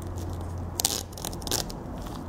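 A seam ripper cutting excess window screen mesh along the edge of an aluminum screen frame. The cutting is louder about a second in and again half a second later.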